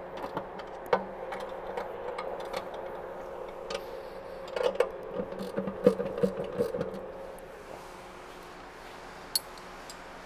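Ratchet and spanner loosening the steel bolts of a concrete mixer's rear belt scraper: scattered metallic clicks and taps, a cluster of them about halfway through, over a steady hum that fades away near the end.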